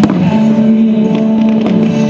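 Fireworks going off: a sharp bang right at the start, then several fainter cracks. Music with long held notes plays underneath.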